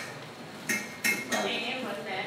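Hairdressing scissors snipping through hair: two sharp metallic snips about a third of a second apart, around the middle, with voices chattering in the background.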